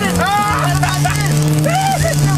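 Car engine running at a steady pitch, heard from inside the cabin, with men's voices shouting over it about a quarter second in and again near the end.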